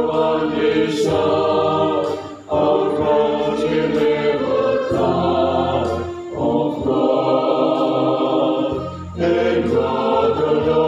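Background music of voices singing together in long held phrases over a steady low bass, with short breaks between phrases.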